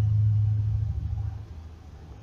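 A low steady hum that fades away about a second and a half in.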